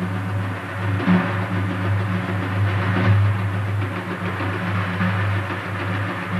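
Two daf frame drums played together in a duet: a continuous rolling pattern with a deep, steady drum resonance, the metal rings inside the frames jingling over it, and a few accented strokes.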